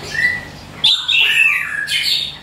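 Chestnut-capped thrush (anis kembang) singing in its cage: a short whistle, then about a second in a loud run of clear notes sliding down in pitch. It sings just after its moult, with its cage still wet from a hose bath.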